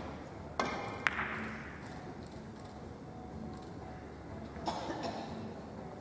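Three-cushion carom billiard shot: the cue tip strikes the cue ball about half a second in, and a sharp click of ball meeting ball follows a moment later. Further knocks come near the end as the balls run on.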